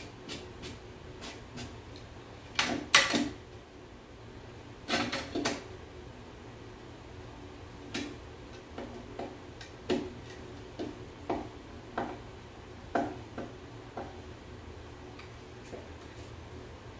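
Clicks and knocks of a metal drawer slide rail and its screws being handled and driven by hand screwdriver into an MDF drawer side. The loudest knocks come in two short clusters about three and five seconds in.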